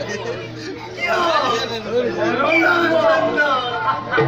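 Speech: a person's voice talking over a low steady hum. The voice is quieter in the first second, and the hum drops away near the end.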